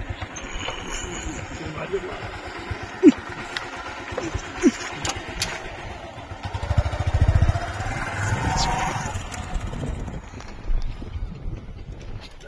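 Motorcycle engine running at low speed, a steady rapid low putter that grows louder for a couple of seconds midway.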